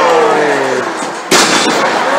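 A wrestler's body crashing onto the wrestling ring's canvas: one sudden loud impact about a second and a half in, with a short boom from the ring after it.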